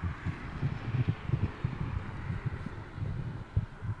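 Wind buffeting the microphone outdoors: an uneven low rumble of gusts surging and easing, with a faint steady hiss behind it.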